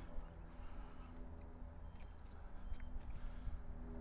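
Quiet: a few faint, soft clicks as the primer bulb of a Wild Badger two-stroke backpack blower is pressed repeatedly to prime the carburettor before a cold first start, over a faint steady low hum.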